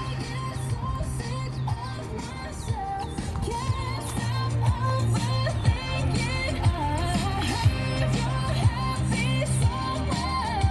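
Pop music with a melody over steady bass and a beat about once a second, playing from a Bose outdoor rock-style landscape speaker.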